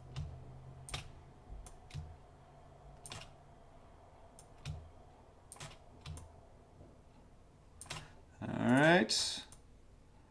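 Scattered single clicks of a computer mouse and keyboard, roughly one a second, while ellipses are drawn and copied in a drawing program. Near the end comes a short wordless voiced sound, like a hum, which is louder than the clicks.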